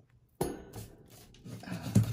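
Objects being handled on a craft desk: a sudden knock about half a second in, then rustling, and a sharp knock near the end, which is the loudest sound. A brief hesitant "uh" comes from a woman's voice.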